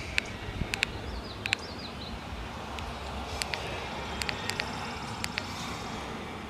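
A string of short, irregularly spaced clicks from buttons being pressed on an XP Deus II metal detector's WS6 module as its settings are stepped down, over a faint low rumble. A bird chirps faintly about a second and a half in.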